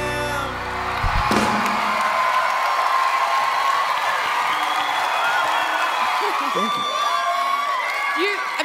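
The band's last chord rings and then cuts off about a second in. A large live audience follows with cheering, whooping and applause.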